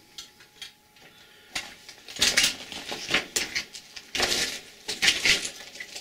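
Footsteps on loose rock rubble on a mine tunnel floor: a couple of light clicks at first, then steady steps a little under one a second from about a second and a half in.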